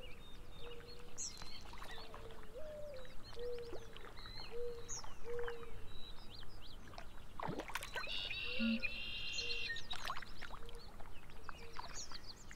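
Wild birds calling by a lake: high chirps and whistled glides over a low short note repeated a little more than once a second, with a louder harsh, buzzy call about eight seconds in. Water laps and splashes underneath.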